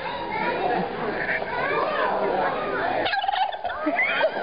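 A white domestic turkey tom gobbling. The clearest gobble, a quick rattling call, comes about three seconds in, over the chatter of people in the background.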